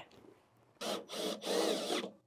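Cordless drill driving screws through a gate hinge into an aluminium fence post, in three short runs starting about a second in, the motor whine rising in pitch with each run.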